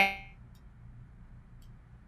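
The last syllable of a woman's speech, then her audio drops out of the video call: only a faint, steady hiss and low hum of the line remain.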